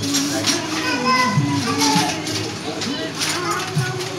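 Several voices chattering at once, high-pitched like children's, with a few sharp clicks in among them.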